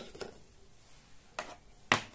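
A few light knocks and clicks of kitchen containers being handled and set down on a countertop: a couple at the start, one about a second and a half in, and a sharper knock near the end.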